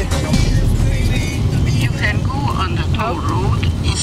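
Steady low rumble of a car's engine and tyres heard from inside the cabin while driving on a wet road.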